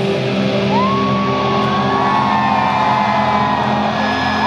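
Live alternative-metal band, distorted electric guitars ringing on a held chord. About a second in, a high note slides up and holds over it.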